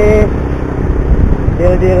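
Steady low rumble of wind on the microphone and the running of a Yamaha Byson's single-cylinder engine as the motorcycle is ridden along in traffic.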